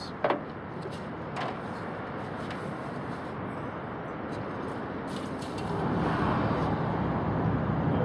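Steady outdoor traffic noise, with two light knocks in the first second and a half as a plastic jug is handled. The noise swells to a louder low rumble for the last two seconds.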